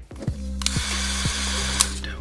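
Wagner electric heat gun running briefly: a steady motor hum with a rush of blown air that starts about half a second in and stops with a click near the end, as the gun warms the vinyl wrap film.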